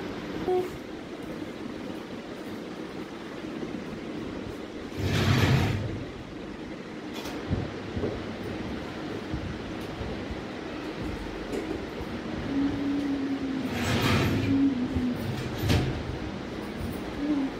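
Steady whirring hum of a ceiling fan, with two brief louder bursts of rustling, about five seconds in and again near the end.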